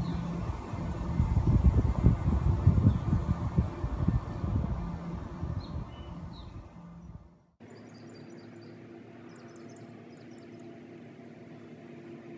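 Wind buffeting a phone microphone outdoors, a loud uneven low rumble over a steady low hum. About seven and a half seconds in it cuts off abruptly, leaving a quieter steady hum with a few faint high chirps of birds.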